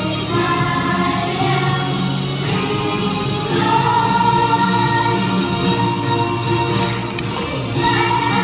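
Children's choir singing a Christmas song together over musical accompaniment, holding long notes through the middle.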